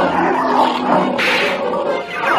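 A cartoon monster's roar sound effect, with a sharp hissing burst a little past the middle.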